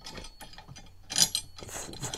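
Hex bolts being turned in by hand on the aluminium stand of a Topeak Solo Bike Holder wall mount: irregular small metallic clicks and scrapes, with a louder rattle about a second in.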